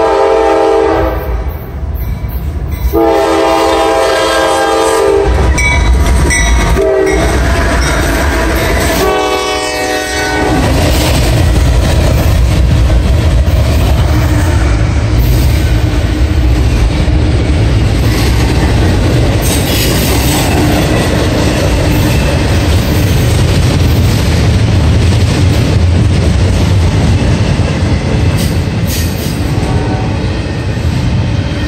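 A freight train's locomotive horn sounds the grade-crossing signal, two long blasts, a short one and a long one, as the train approaches. The locomotives then pass close by, followed by a steady loud rumble of container cars rolling on the rails.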